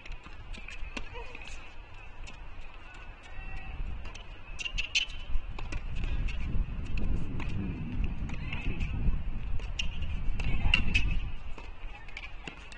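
Tennis rally on a hard court: a string of sharp ball strikes off the racquets and ball bounces, with a low rumble building underneath in the second half.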